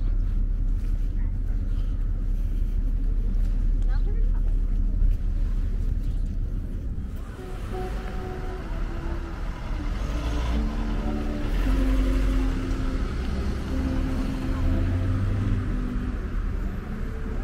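Low, gusty rumble of wind on the microphone over outdoor noise. About seven seconds in, the sound changes and background music of held melodic notes comes in over the rumble.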